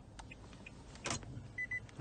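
Faint, regular ticking of a car's hazard-light flasher, about three ticks a second, in a 2022 Nissan Altima during key programming. A sharper click comes about a second in, and two short high beeps follow near the end.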